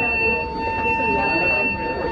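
Ship's alarm sounding one steady, unbroken buzzing tone for a passenger muster drill, with people talking under it.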